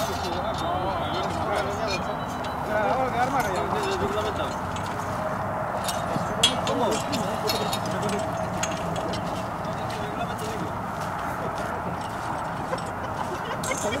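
Men's voices talking over outdoor background noise, with a few sharp metallic clinks as the metal tube poles of a portable soccer goal are handled and fitted together.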